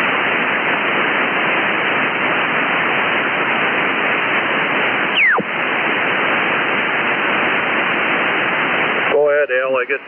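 Ham radio receiver audio with no station transmitting: a steady hiss of band noise fills the receiver's narrow voice passband. About five seconds in, a single whistle glides quickly down in pitch. A voice returns through the noise near the end.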